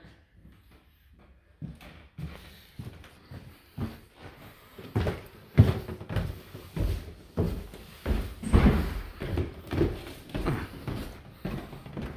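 Footsteps on a wooden staircase: a series of dull thumps, a few scattered at first, then steadier and louder from about five seconds in as someone walks down the stairs.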